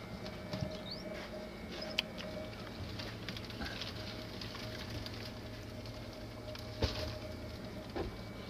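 Light pattering and scratching inside a cricket box, as crickets and egg-carton cardboard are moved about by hand. There is a sharp knock about two seconds in and another near the end, over a steady low hum.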